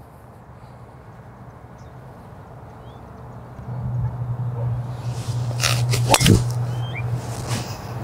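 A golf driver strikes a teed ball on a tee shot, one sharp crack about six seconds in, over a steady low hum.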